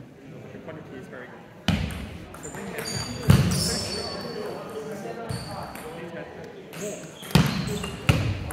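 Table tennis players moving between points on a wooden sports-hall floor: three sharp knocks, the loudest about a third of the way in and another near the end, with brief high shoe squeaks and a low murmur of voices in the hall.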